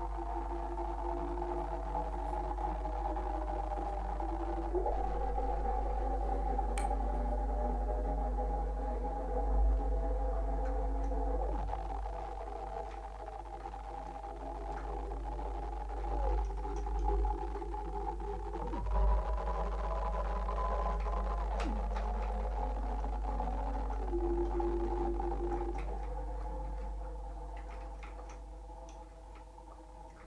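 Improvised electronic music from live-processed melodica and electronics: several held tones stacked together, sliding or stepping to new pitches every few seconds over a steady deep hum, fading out over the last few seconds.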